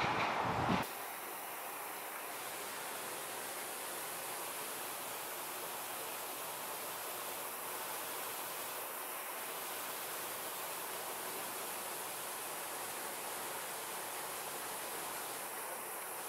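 A louder sound cuts off abruptly about a second in, leaving a steady, even hiss that is strongest in the high range and carries no distinct events.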